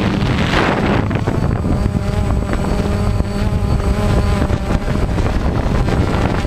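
Wind rumbling on the camera microphone, with the steady hum of a DJI Phantom quadcopter's motors coming through for a few seconds in the middle.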